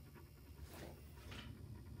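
Near silence: quiet room tone with a couple of faint breaths close to the microphone.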